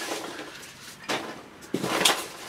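Polystyrene packing peanuts rustling as hands dig through them in a cardboard box, in uneven bursts: rustling at first, a short sharp rustle about a second in, and more near the end.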